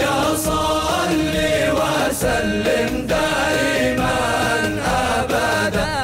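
Male chorus chanting a devotional song in praise of the Prophet in unison, accompanied by frame drums beaten at intervals.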